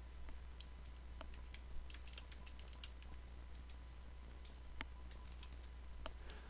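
Computer keyboard being typed on: faint, irregular key clicks as a line of code is entered.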